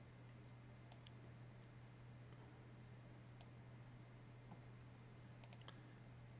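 Near silence with a few faint computer mouse clicks: a pair about a second in, one around the middle and a quick cluster of three near the end, over a steady low hum.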